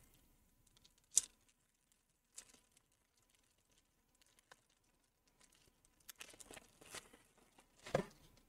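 Clear plastic shrink-wrap crinkling and tearing as it is peeled by hand off a small PoE injector. It comes as a few faint, scattered crackles, the sharpest about a second in and a small cluster around six to seven seconds.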